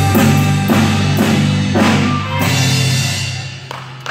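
Live jazz band with drum kit, electric guitar, saxophone, flute and clarinet playing the closing bars of a tune, punctuated by accented drum and cymbal hits about every half second. The last chord dies away near the end.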